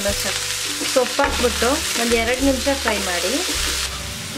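Sliced onions, green chillies and chopped mint leaves sizzling in hot oil in a nonstick frying pan as they are stirred together, a steady frying hiss. A wavering pitched sound runs over it.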